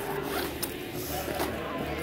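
Zipper on a fabric backpack being pulled open in a few short rasping strokes.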